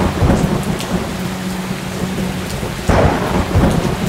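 Thunderstorm sound effect: heavy rain falling steadily with rolling thunder, and a louder thunderclap about three seconds in.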